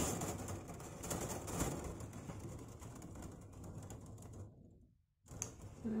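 Thin wire being pulled off a coil and straightened by hand: a light rustling with many small clicks and scrapes. It fades and cuts off about four and a half seconds in.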